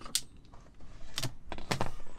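A few sharp clicks and light knocks from handling wires fitted with spade connectors and a crimping tool: one just after the start, a couple more past the middle.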